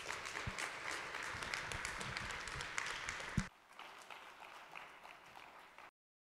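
Audience applauding. The clapping drops abruptly to a quieter level about three and a half seconds in, then cuts off just before the end.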